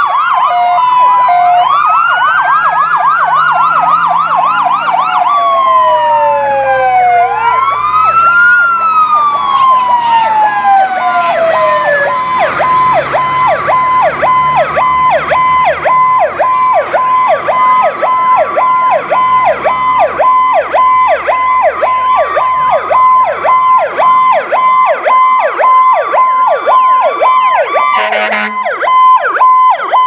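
Several fire truck sirens sounding at once: slow rising-and-falling wails overlapping for the first dozen seconds, then a fast yelping warble with a steady tone beneath it. A short, loud horn blast comes near the end.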